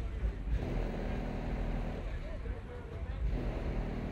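Low, steady engine rumble from a Chevrolet Camaro rolling slowly past, with people talking nearby.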